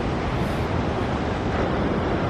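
Steady rushing noise of wind on the microphone, mixed with a twin-outboard boat running at speed up a shallow channel and the spray of its wake.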